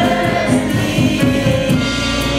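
Gospel choir singing a worship song together, voices held in sustained chords.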